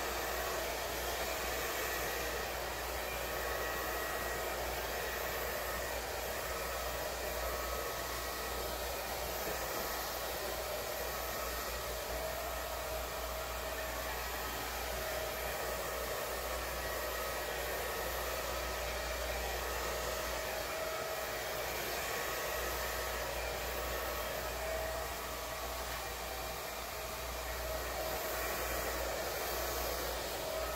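Handheld hair dryer running steadily, a continuous rush of air with a faint motor whine, blowing wet acrylic paint across a canvas.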